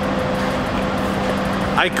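Indoor shooting range's ventilation system running: a steady rushing noise with an even low hum. A man's voice starts near the end.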